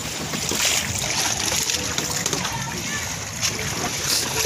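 Swimmers splashing in the sea, with a louder burst of splashing about half a second in, under voices in the background.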